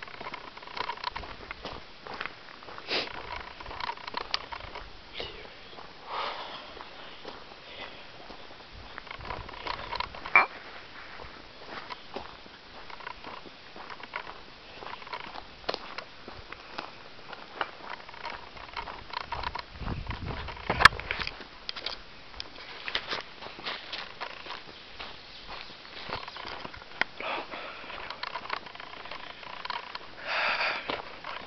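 Irregular crunching and clicking of someone walking a dirt forest trail while carrying a handheld camera, with one sharp knock about two-thirds of the way through, just after a brief low rumble.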